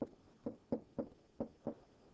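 Stylus tapping and clicking on a tablet screen while writing numbers in digital ink: six short, sharp taps about a third of a second apart.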